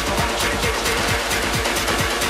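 Electronic dance music from a DJ set, played loud over a club sound system, with a steady, regularly repeating kick drum.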